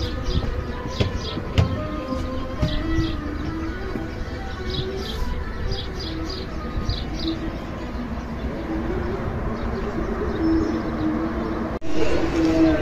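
Small birds chirping in short, repeated high bursts over soft background music.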